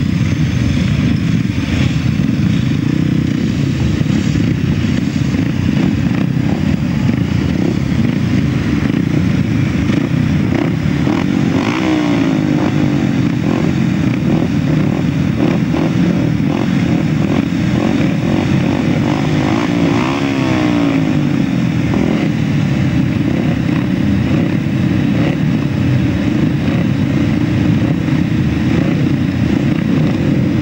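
Several grasstrack solo motorcycles running together on the start line, with riders revving their engines up and down in a few clusters midway.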